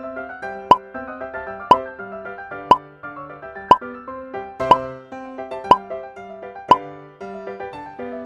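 Light keyboard background music with a short pop sound effect about once a second, seven pops in all.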